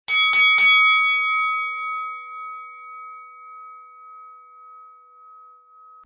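Three quick strikes of a bell-like chime within the first second, then a single tone ringing on and slowly fading for several seconds: a channel-logo intro sound effect.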